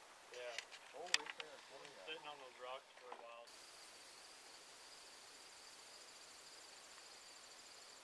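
Faint, indistinct voices with one sharp click about a second in. Then the sound cuts abruptly to a steady, high-pitched insect buzz.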